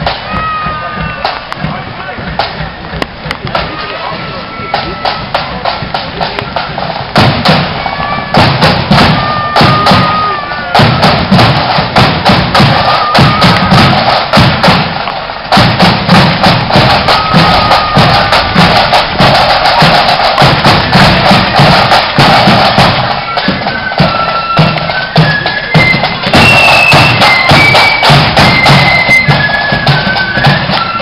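A marching flute band playing, with flutes carrying the melody over steady drum beats. It gets much louder about seven seconds in as the band approaches.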